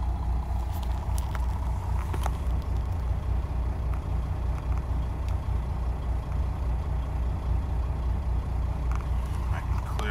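Diesel engine of a Volvo VNL780 semi truck idling steadily, heard from inside the cab, with a few faint clicks about one and two seconds in.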